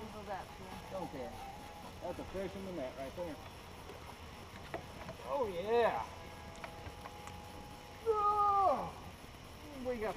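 Indistinct human voices calling out in short exclamations, with louder calls about five and a half seconds in and again about eight seconds in.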